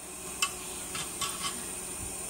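A spoon clinking and scraping in a bowl as a child stirs at a kitchen sink: one sharp clink about half a second in, then a few lighter ticks.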